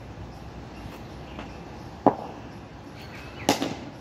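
Two sharp knocks of a cricket ball being played off the bat in back-foot defence, about a second and a half apart, the second the louder.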